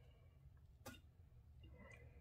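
Near silence: room tone with one faint click a little under a second in.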